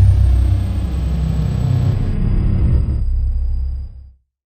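Cinematic logo-sting sound design: a deep, loud rumble with a thin high tone that glides down and then holds steady, fading out at the very end.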